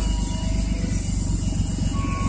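Minivan engine idling with a deep, rapidly pulsing exhaust rumble: the muffler has a hole in it.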